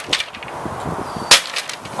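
An axe chopping through thin wooden boards: one sharp crack about a second in, with a fainter knock just at the start.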